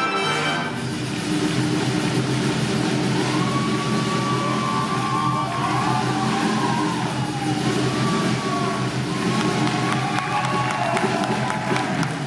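A big jazz band's held chord cuts off just after the start. Audience applause and cheering with a few whoops follow, while low sustained notes from the band carry on underneath.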